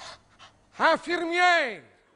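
A man's wordless vocal sounds, as an old man character: a faint breath, then a short rising-and-falling 'eh' and a longer held groan that sinks in pitch and fades out near the end.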